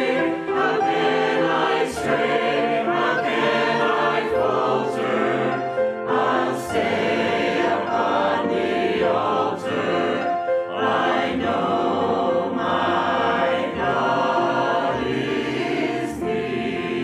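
A mixed choir of men's and women's voices singing a Christian hymn.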